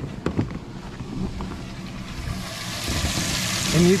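Water spraying and splashing into a boat livewell from the recirculation pump's jet, a hiss that grows louder over the last two seconds. A few sharp clicks come about a quarter second in.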